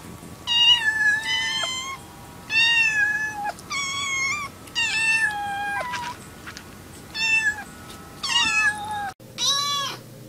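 Young kittens meowing, about six high-pitched meows with short pauses between them, then one more kitten meow just before the end.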